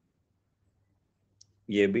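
Near silence with a faint low hum, broken by a single short, faint click about a second and a half in, just before a man starts speaking.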